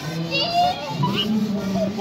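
Overlapping voices of children talking and calling out, with a high-pitched call about a third of the way in.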